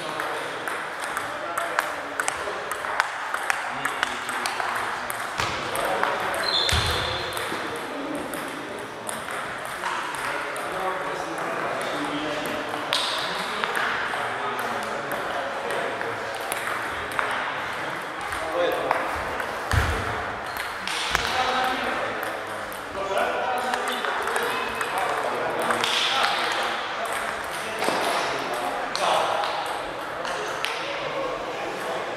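Table tennis balls clicking off tables and bats in irregular rallies, from the match in front and from several other tables in play, with indistinct voices underneath.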